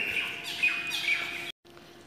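Birds chirping in the background, cut off suddenly about a second and a half in.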